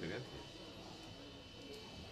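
Faint murmur of voices in a small office, with a brief bit of speech at the start.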